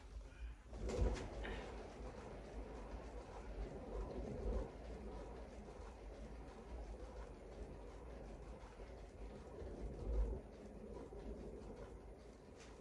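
A painting spinner turning with a wet poured canvas on it, giving a steady low rumble, with a knock about a second in and another near the end.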